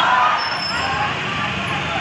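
Busy street junction: indistinct voices of a crowd over steady traffic noise.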